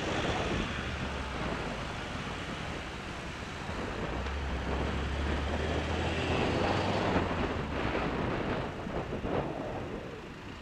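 Road traffic heard from a moving bicycle: a steady rush of wind and road noise, with a car engine humming low close alongside through the middle seconds.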